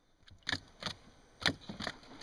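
A freshly caught red piranha flapping on the wooden floor of a dugout canoe: four sharp knocks and slaps against the hull.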